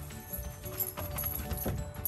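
An Alaskan Malamute's claws clicking a few times on hard paving and wooden steps as it trots, under quiet background music.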